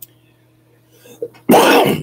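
A man coughs once, loudly, about a second and a half in, after a short pause with only a faint steady hum.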